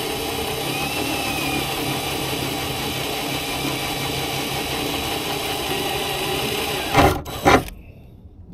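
Cordless DeWalt drill running steadily as its bit bores through the metal gunwale of a boat. Two louder, rougher sounds come about seven seconds in as the bit works through, and then the drill stops.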